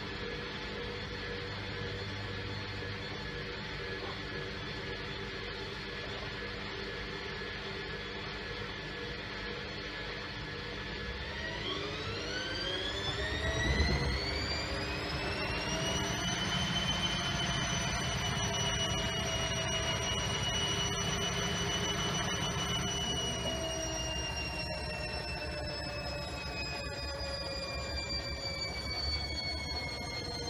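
Front-loading washing machine running with water and laundry in the drum. About a third of the way in, its motor whine climbs steeply in pitch as the drum speeds up, with a knock on the way. The whine holds high for several seconds, then slowly falls.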